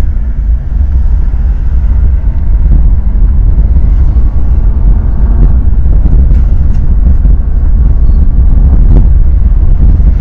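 A car driving along a road, heard from inside the cabin: a loud, steady low rumble of road and engine noise.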